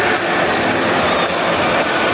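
Music played loud over a football stadium's public-address system, filling the ground with a steady wash of sound.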